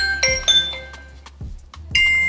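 Alexa app previewing its 'Blink' doorbell chime: two quick bright electronic notes that ring and fade over about a second. Right at the end the next chime preview, 'Pager', starts.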